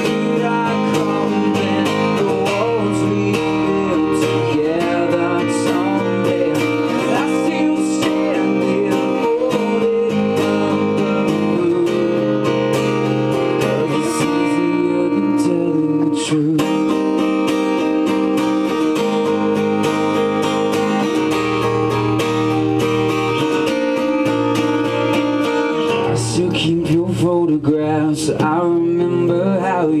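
Two acoustic guitars strummed and picked together at a steady level, an instrumental stretch of a live acoustic song, with a man's singing voice coming back in near the end.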